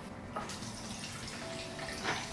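Vodka being poured from a glass bottle into a plastic pitcher, a steady run of liquid, with a light click about a third of the way in.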